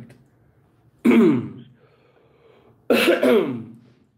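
A man clearing his throat twice, once about a second in and again near the end, each a short, loud sound that falls in pitch as it fades.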